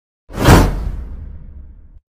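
A whoosh sound effect from a subscribe-button outro animation: one swoosh coming in suddenly about a third of a second in, loud at first and fading away over about a second and a half.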